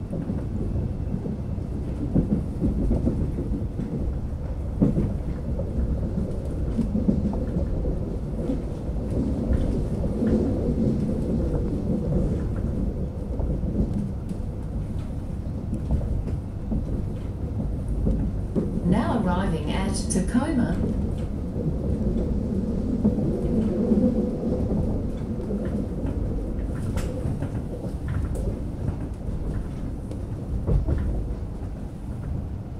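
Low, steady rumble of an Alstom X'Trapolis electric suburban train heard from inside while running. About two-thirds of the way through comes a high, wavering squeal lasting about two seconds.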